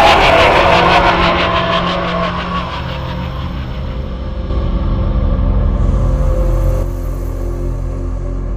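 Dark, scary film score. A pulsing, ringing swell fades over the first few seconds above a steady low rumbling drone, and the drone swells again with a thin high tone a little past the middle.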